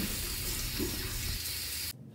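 Water running from a bathroom sink tap as a face is rinsed, a steady rush that cuts off suddenly near the end.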